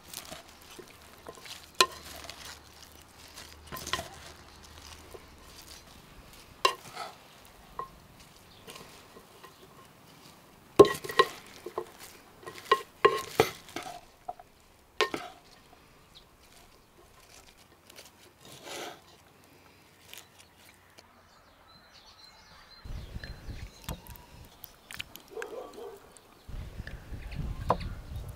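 Tableware sounds: a wooden spoon tossing salad in a clay bowl, with scattered sharp clinks and knocks of utensils against earthenware dishes, thickest about halfway through. A low rumble comes in near the end.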